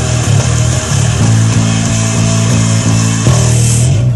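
Electric bass played fingerstyle along with a loud heavy rock recording with drums and cymbals. A run of quick, evenly repeated bass notes gives way to a long held final note near the end.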